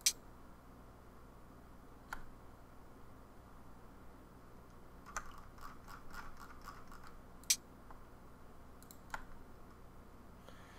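Faint, scattered computer mouse clicks, single sharp clicks spaced a second or more apart with a short flurry a little past the middle, over a low steady hum.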